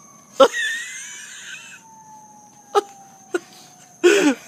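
Distant siren, a single faint tone sliding slowly down in pitch. Early on a sharp knock is followed by a noisy rasp lasting about a second and a half, then two light clicks.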